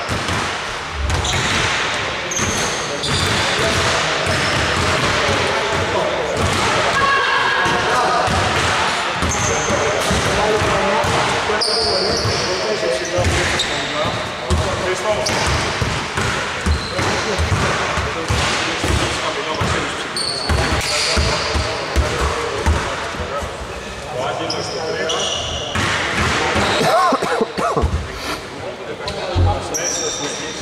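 Several basketballs bouncing irregularly on an indoor court floor as players dribble and shoot during a warm-up, the thumps coming thick and overlapping throughout.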